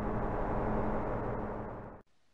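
Rushing, rumbling noise sound effect of an animated logo intro, holding steady and then cutting off abruptly at the end.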